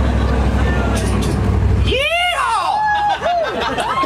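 A motor vehicle rumbling deep and loud for about two seconds, then dropping away. It is followed by a voice sliding up and down in pitch in several long arching wails.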